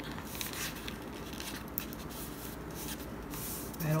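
Faint rustling and rubbing of paper as hands press it down and smooth it along the glued edge of a cardboard cover.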